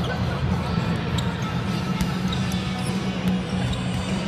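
Volleyball being kicked and struck by players' feet and knees, and bouncing on the court floor: scattered sharp thuds at irregular intervals, over steady background music.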